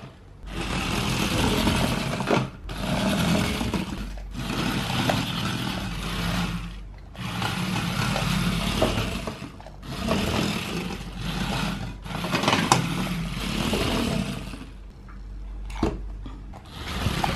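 Geared DC motors of a small 3D-printed four-wheel-drive RC car whirring in about seven bursts of one to three seconds each, with brief stops between, as the car is driven.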